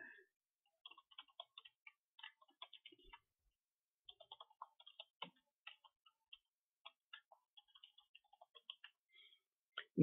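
Near silence with faint computer keyboard typing: many short, irregular key clicks as text is entered.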